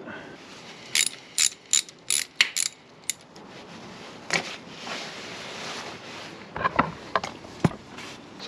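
Ratchet wrench clicking as it works a 6 mm bolt on the motorcycle's coolant pipe: a run of sharp clicks, about three a second, for about two seconds, then faint rustling and a few more clicks and knocks near the end.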